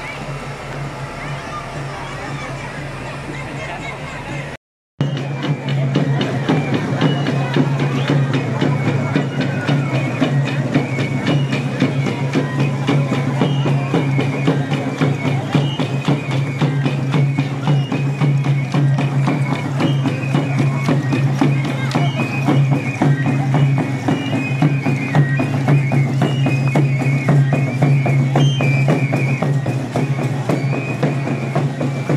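Street noise from the parade at first, cut by a brief dropout about five seconds in. Then comes louder traditional dance-troupe music: a high, shrill pipe melody over a steady low drone, with fast drumming and rattling throughout.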